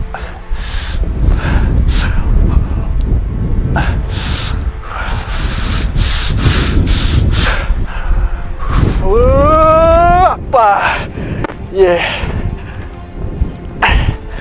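A man breathing hard in short puffs of air while doing inverted rows on a bar, with a strained rising groan about nine seconds in and shorter ones near the end of the set. Wind rumbles on the microphone throughout.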